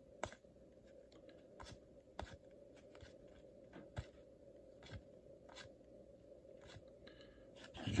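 Faint, short clicks of baseball cards being flipped off the front of a stack one at a time, roughly one every half second to a second, over a low steady hum.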